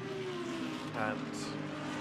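GT3 race car engines running on track, their note falling slowly in pitch through the first second, with a brief hiss about halfway through.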